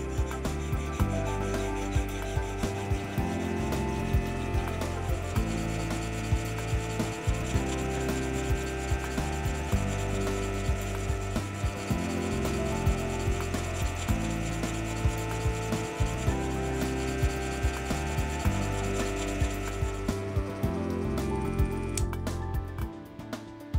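Bench filing machine driving a fine tri-cut file up and down through the square hole of a brass ratchet wheel: steady rasping of file on brass, with about two to three strokes a second.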